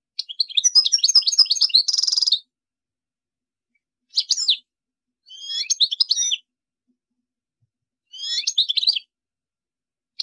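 European goldfinch (chardonneret) singing: a long run of rapid, high twittering notes ending in a short buzzy trill, followed by three shorter twittering phrases with pauses of about a second or more between them.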